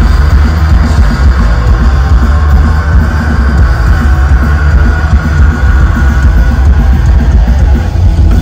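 Punk rock band playing live and loud: distorted electric guitars, bass guitar and drums in a fast, heavy instrumental passage, with no singing.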